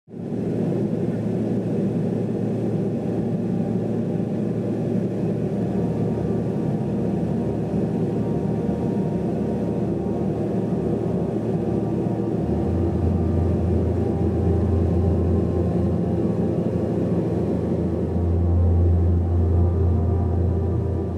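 Aircraft cabin noise in flight: a steady low rumble from the engines and airflow. A deeper drone grows louder about twelve seconds in and again near the end.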